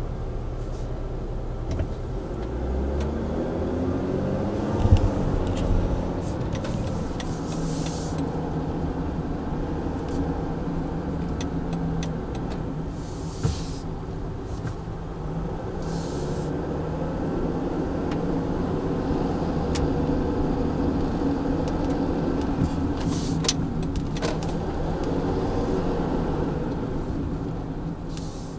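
Mercedes Sprinter van driving through town, heard from inside the cab. The engine note rises as it pulls away in the first few seconds, with a single thump about five seconds in, then it settles into a steady drive with road noise.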